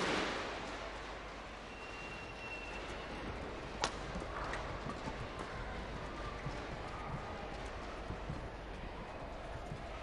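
Badminton rally: rackets hitting the shuttlecock, with one sharp crack about four seconds in and lighter hits after, among footfalls and a shoe squeak on the court floor, over a low arena crowd murmur.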